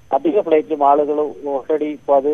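Speech only: a man talking over a telephone line, sounding narrow with the high end cut off.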